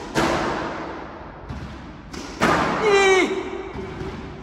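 Squash ball being hit: two sharp impacts of racket and ball against the court wall, one just after the start and one about two and a half seconds in, each echoing in the court. A short falling squeal follows the second impact.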